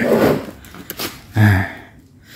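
Rustling of a tape-wrapped cardboard parcel being handled and set down in a plastic tray, then a brief low hum of a man's voice.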